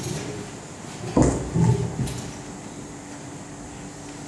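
A man clearing his throat close to a pulpit microphone: two short, loud, low rasps about a second in, over a steady room hum.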